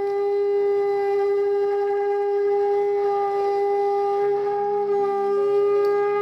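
Conch shell blown in one long, steady note held throughout. A fainter, lower tone joins about four seconds in.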